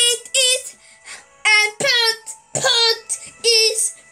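A child singing in about six short, high-pitched phrases with pauses between them.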